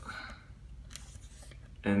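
Faint handling sounds with a single light click about a second in, as fingers work the chrome locking knob of a suction-cup soap dish after it has been twisted tight.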